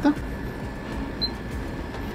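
Small bench fan of a solder fume extractor running with a steady low hum.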